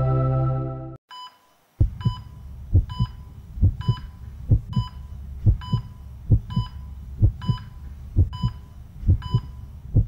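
Intro music that stops about a second in. After a short gap comes a heartbeat sound effect: paired low thumps about once a second, each with a short high electronic beep.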